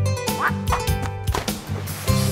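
Cheerful children's-song backing music with three short, rising cartoon bird calls laid over it.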